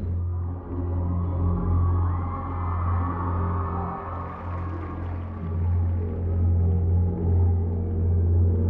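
Tense background music: a low, steady drone with long held tones above it.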